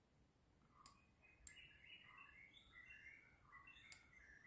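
Near silence, with three faint sharp computer-mouse clicks and faint birds chirping in the background.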